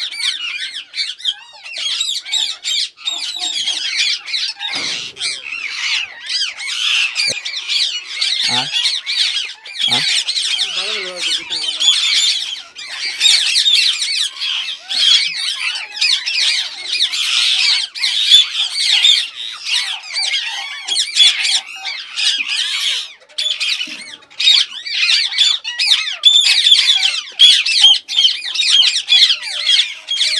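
A colony of Indian ringneck parakeets squawking and screeching without pause, many high-pitched calls overlapping.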